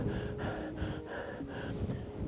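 A person breathing quickly and heavily, panting in fast, even pulses, with a faint steady low hum underneath.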